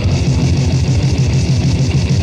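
Grindmetal band recording: loud, dense distorted electric guitar music with a fast, even pulse in the low end.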